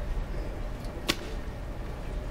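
A single sharp click about a second in, over a low steady room rumble.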